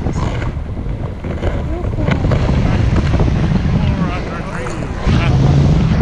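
Wind buffeting an action camera's microphone in the airflow of a tandem paraglider flight: a steady low rumble that gets louder about five seconds in.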